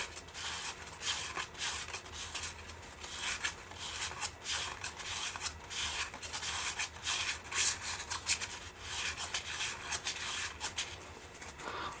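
Cardboard baseball cards sliding against one another as a stack is thumbed through by hand, the front card moved to the back again and again. The result is a run of quick, irregular rubbing swishes.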